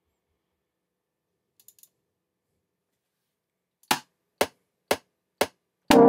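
DAW metronome count-in: four evenly spaced clicks half a second apart, at 120 BPM, after a stretch of near quiet with a couple of faint ticks. Synth chords come in right at the end as recording starts, with the click carrying on.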